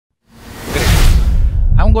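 A whoosh transition sound effect that swells over about half a second and then fades away. Near the end a man begins to speak.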